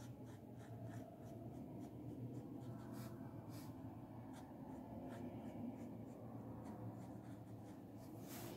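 Faint scratching of a wax crayon rubbed across textbook paper while colouring in a leaf, in short, irregular strokes over a low steady hum.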